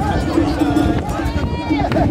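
Crowd of mikoshi bearers chanting in a rhythmic, repeating pattern as they carry the portable shrine, with shouting voices over a dense crowd.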